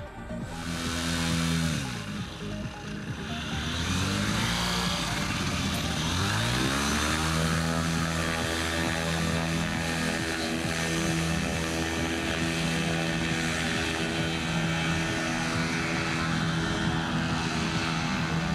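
Paramotor engine and propeller: the pitch drops about two seconds in, climbs back up around six to seven seconds, then holds steady at high power as the pilot takes off.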